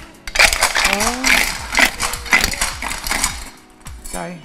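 Women talking, over short knocks and clatter from a round hard box being handled and its lid taken off.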